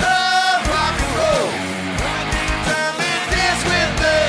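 Live 1980s-style rock cover band playing: electric guitar, keyboards and drums, with sung vocals, with a held note near the start and a bending line about a second in.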